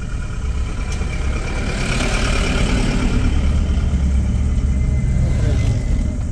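A loaded Tata goods truck's engine passing close by a waiting car, heard from inside the car over its own running engine. The noise swells and fades about two seconds in.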